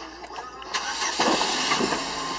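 Volkswagen Golf's passenger door opened and a passenger climbing into the front seat, a noisy shuffle that starts about a second in.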